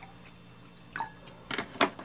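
Water pouring in a thin stream from a plastic bottle into a glass mug, followed by a few sharp light knocks about a second in and near the end as the pour stops.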